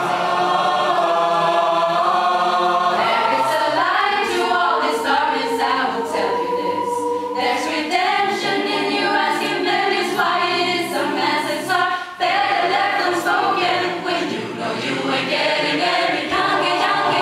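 Mixed-voice choir singing an a cappella arrangement in several parts: held chords layered over one another, with crisp rhythmic accents recurring through the middle.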